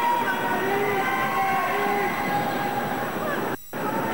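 Arena sound from an indoor inline speed skating race: a steady rolling noise from skate wheels on the wooden floor, with crowd voices over it. The sound drops out briefly near the end.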